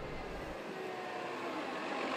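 Transit bus driving slowly past: a steady engine hum with road noise, growing gradually louder.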